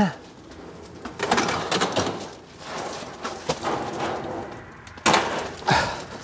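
Galvanized steel wire mesh screen being pulled down from wooden soffit framing: irregular bursts of scraping and rattling, the loudest about five seconds in.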